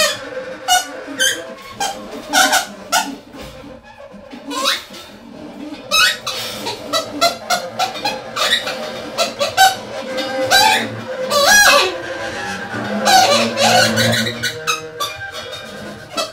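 Free-improvised music from alto saxophone, double bass and drums: short, high, sliding sax notes, several swooping sharply upward, over scattered clicks and knocks.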